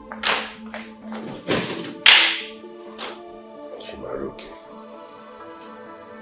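Dramatic background film score: held low tones with a run of sharp percussive hits over the first few seconds, the loudest about two seconds in, then only the held tones.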